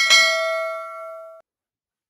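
A bell-like ding sound effect for a subscribe animation's notification bell, sounding once and ringing down for about a second and a half before cutting off sharply.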